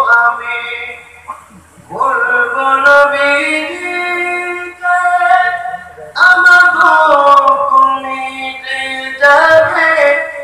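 A single voice singing or chanting religious verses unaccompanied, in long held melodic phrases that slide between notes, with a short lull about a second in and brief breaths between the later phrases.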